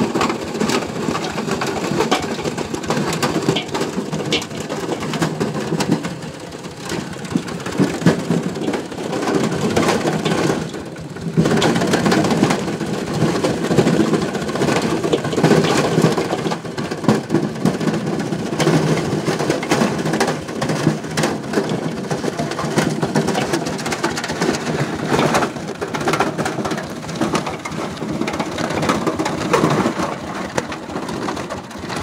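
Cassava being ground: a continuous, dense crackling and grinding noise that eases off briefly about six seconds in and again around eleven seconds.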